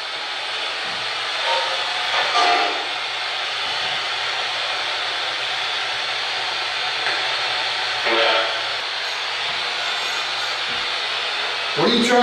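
Steady radio static hiss from a handheld radio, with brief faint voice-like fragments coming through about two seconds in and again about eight seconds in.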